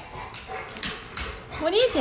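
Knocks and clatter of a plastic toy cup being handled and banged on a wooden floor, then a short, loud cry that rises and falls in pitch near the end.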